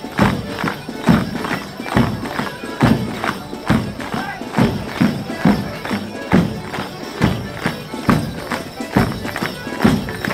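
Morris dance band playing: a melodeon tune over a steady bass drum beat, just over one beat a second, with the dancers' bells and steps in time.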